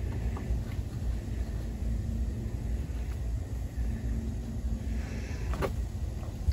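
Low steady rumble with a faint hum through the middle, and one sharp knock near the end.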